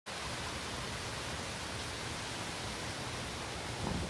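Steady, even hiss of wind ambience, without gusts or changes.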